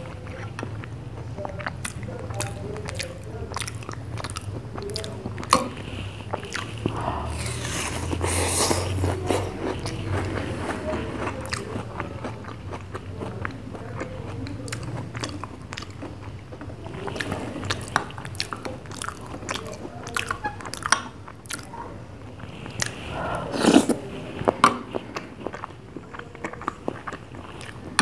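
Close-miked eating of ice cream falooda: wet mouth sounds of biting and chewing, with many sharp clicks from a metal spoon against a glass and the mouth. A few louder noisy bursts stand out, the loudest a little before the end.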